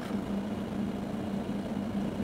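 A motor vehicle engine idling with a steady, even hum.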